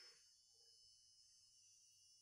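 Near silence: room tone with faint steady hiss.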